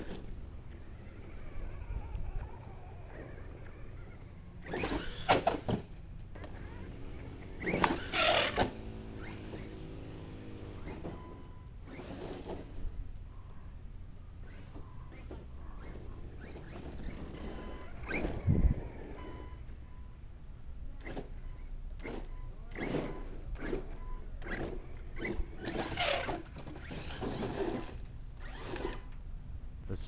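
Redcat Landslide 4S electric RC monster truck driving, its motor whining on and off, with several short loud bursts of clatter and scrabbling as it throttles and bumps over the dirt.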